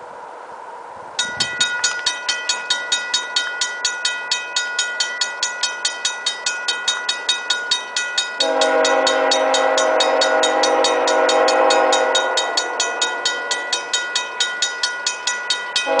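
A railroad crossing warning bell starts ringing about a second in, with quick even strokes of about two and a half a second: the crossing has activated for an approaching train. About eight seconds in, the approaching locomotive's air horn sounds one long chord-like blast of about four seconds, and a further blast begins at the very end over the continuing bell.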